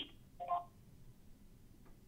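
A short two-pitch electronic beep over a telephone line about half a second in: the conference bridge's tone as the caller is connected into the call.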